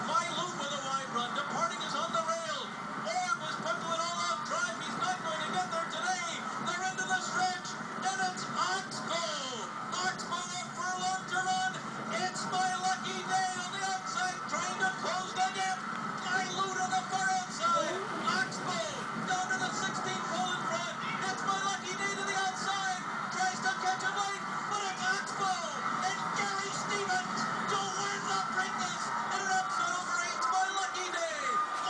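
Television sound of a horse race's stretch run and finish, heard through the set's speaker. It is a dense, unbroken mix of many voices over one another with music-like sound and no distinct words.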